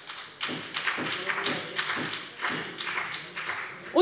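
Members in a parliament chamber reacting with irregular knocking on desks and clapping, with some voices mixed in.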